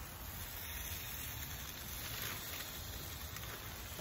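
Barbecue smoker's wood fire giving a faint, steady hiss and soft crackle.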